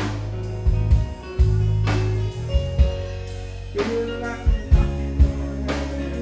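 Live rock band playing: drum kit, heavy bass notes and guitar, with drum strokes and cymbal crashes falling every second or so.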